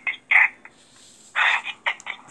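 A domestic cat making short chirping meows: two quick calls at the start, then a longer one a little past halfway.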